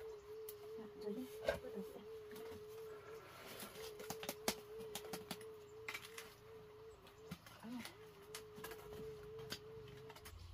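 Light clicks and knocks of wooden and bamboo sticks being handled in a fire pit of cold ash. Under them runs a steady warbling tone at one pitch, with two short breaks.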